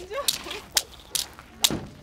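Thin sticks and a bundle of dry grass swished and whipped down onto gravelly ground: four sharp strikes about half a second apart, the last the loudest.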